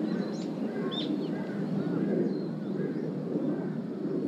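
Birds chirping: several short, high chirps in the first second or so, then softer calls, over a steady low outdoor ambience.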